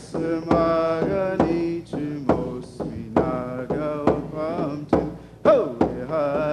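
Live music: a man singing a chant-like melody with long held notes over a steady beat on a hand-held frame drum struck with a stick, about two to three strikes a second.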